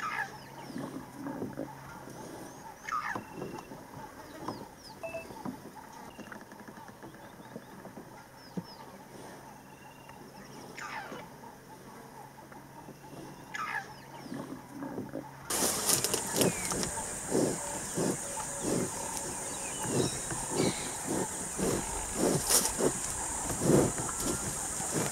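Outdoor bush ambience with scattered bird calls, short descending whistles every few seconds. About two-thirds of the way in it turns suddenly louder, with a steady high-pitched drone and a run of crackles and knocks.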